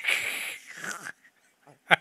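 A man's stifled laughter: a breathy wheeze for about the first second, then a short sharp burst of breath just before the end as the laugh breaks out.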